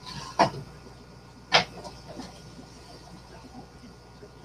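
Two sharp knocks about a second apart, the second louder, as plastic bottles and a plastic jug are set down on a stovetop, followed by a few faint clatters.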